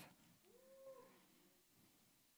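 Near silence: room tone in a pause of speech, with one faint, short pitched sound, rising then falling, about half a second in.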